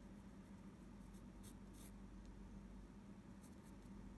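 Pencil lead scratching faintly on watercolour paper in a few short sketching strokes, about a second in and again near the end, over a low steady hum.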